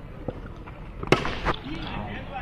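A sharp crack of a cricket bat striking a tennis ball about a second in, followed moments later by a second, softer knock and a brief shout.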